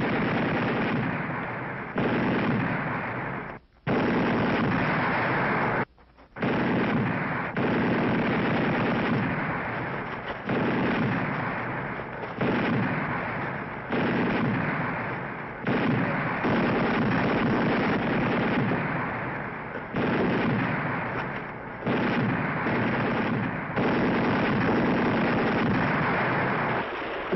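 Battle sound effects on a television soundtrack: sustained gunfire with a heavy blast roughly every two seconds, each coming on suddenly and fading off. Two brief near-silent gaps come a few seconds in.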